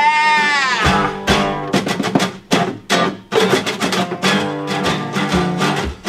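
Three acoustic guitars strumming chords together in a steady rhythm. A held sung note arches and ends under a second in.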